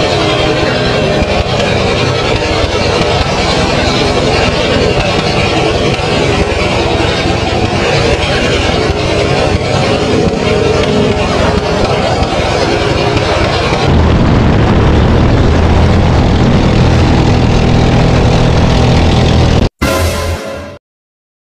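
Motorized outrigger racing boat (bangka) running at speed, its engine drone mixed with wind rush on the microphone and hissing water spray. About two-thirds of the way through, the sound shifts to a deeper, steadier engine drone with less hiss, and it cuts out briefly just before the end.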